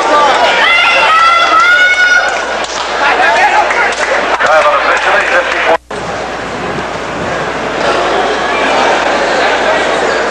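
Stadium crowd shouting and cheering, with a nearby spectator's high-pitched, drawn-out yell in the first couple of seconds. The sound cuts out for an instant just before the middle, then goes on as a steadier crowd hubbub of many voices.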